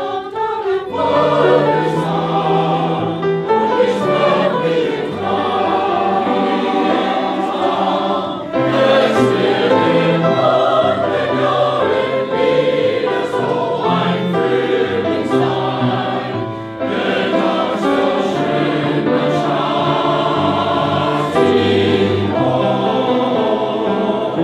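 Mixed four-part (SATB) choir singing a German song in harmony, with piano accompaniment. The singing dips briefly twice between phrases.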